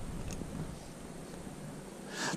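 Quiet outdoor background with a low, steady rumble typical of light wind on the microphone, and one faint tick about a third of a second in.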